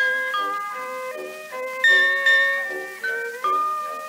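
Orchestral interlude on a c.1912 acoustic-era record: orchestra bells play the melody in struck notes that each ring and die away, over a light accompaniment of short repeated lower notes. The sound is thin, with no deep bass.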